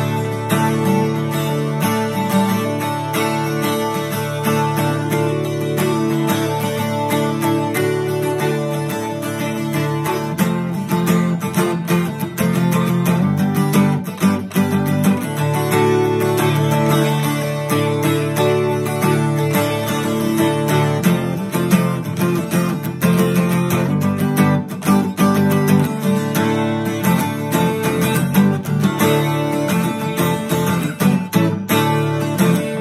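Solo steel-string acoustic guitar in DADGAD tuning playing an instrumental passage: picked notes over ringing open low strings. From about a third of the way in, the plucking gets sharper and more percussive.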